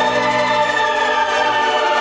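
Symphony orchestra playing a long held chord.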